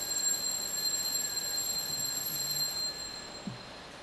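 A faint, high, steady ringing tone that fades out about three seconds in, over low room noise, with a soft low knock near the end.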